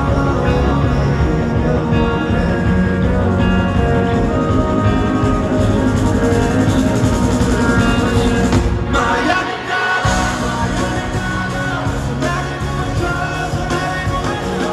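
Live rock music through an arena PA, with a male singer over the band, recorded from the crowd. About nine seconds in the band thins out and the bass drops away for about a second before the full sound returns.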